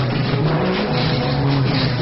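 Loud live Eritrean band music, with a bass line stepping from note to note.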